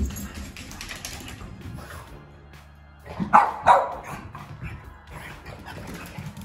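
Boston terrier barking twice in quick succession about three seconds in, after a short thump at the start.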